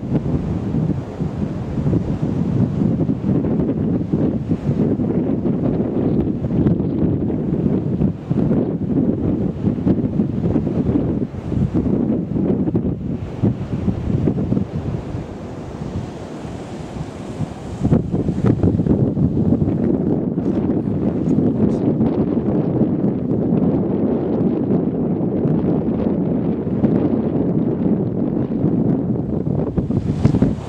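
Strong wind buffeting the camera's microphone, a loud low rumbling roar that eases for a few seconds in the middle and then comes back hard.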